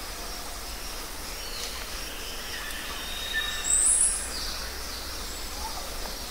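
Forest ambience: steady background noise with faint scattered bird calls. The loudest sound is a short high-pitched bird call about four seconds in.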